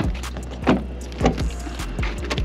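Car's rear door being unlatched and swung open, with a few sharp clicks and knocks from the handle and latch over a steady low hum.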